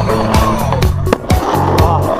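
Skateboard wheels rolling over a concrete skatepark ramp, mixed under background music with a steady beat.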